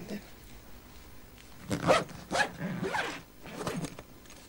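People talking in the background, starting about two seconds in and breaking off shortly before the end.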